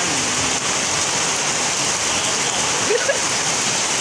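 Heavy tropical downpour falling on a wet concrete yard and street: a steady, even hiss.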